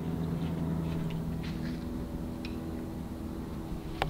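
Steady low hum with even overtones, unchanging in pitch, with a couple of faint ticks in the middle.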